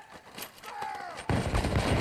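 A volley of musket fire from a film battle scene: after a few scattered sharp cracks, a loud, dense crackle of many muskets firing together breaks out about one and a half seconds in.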